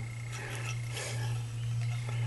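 A steady low hum, with faint rustling and handling noise over it.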